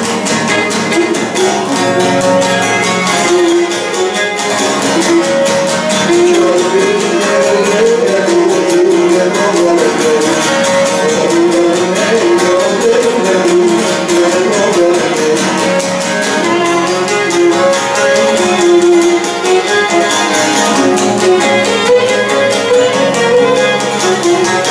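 Cretan lyra bowing a syrtos dance melody, accompanied by a laouto (Cretan lute) strumming the rhythm and chords.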